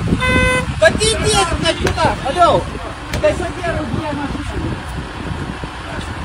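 A car horn gives one short toot right at the start, then people's voices call out over a steady low background rumble.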